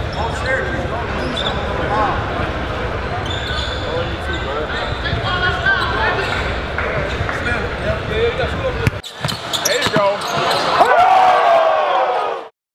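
Basketball gym ambience: a basketball bouncing on the court under a crowd's unclear chatter and shouts, echoing in a large hall. The low background rumble drops away about nine seconds in.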